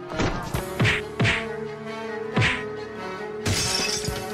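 Film soundtrack for a fight scene: music with a steady held tone, cut by about five sharp hit sound effects in the first two and a half seconds, then a half-second crashing, shattering burst near the end.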